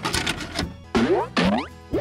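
Cartoon sound effects over children's background music: two swooping boing-like glides just after a second in, each dipping in pitch and then shooting up.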